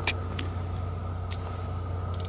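Thermal rifle scope switching on: a thin, steady high electronic whine with a few small clicks from its button, over a constant low hum.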